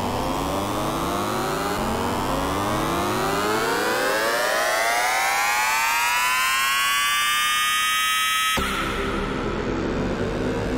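Synthesized trap riser effects, stacks of tones gliding upward in pitch. One ends about two seconds in and the next climbs, levels off and cuts off suddenly about two-thirds of a second before a new, noisier effect starts.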